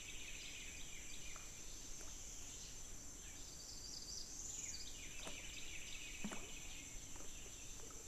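Faint swamp ambience: a steady high-pitched insect drone with scattered short, falling bird calls and a couple of soft ticks.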